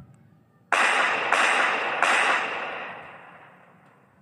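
An end-card sound effect: a sudden burst of hissing noise about a second in, renewed twice in quick succession, then fading out over about two seconds.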